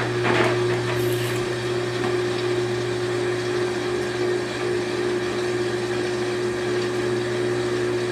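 Front-loading washing machine on its final spin cycle, the drum turning at high speed with a steady whir and a constant hum.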